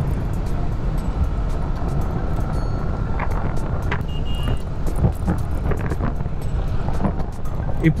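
Wind rushing over a helmet-mounted microphone on a Yamaha R15 V3 cruising in sixth gear at about 60 km/h, with the motorcycle's single-cylinder engine running underneath as a steady low roar. A short high beep sounds about four seconds in.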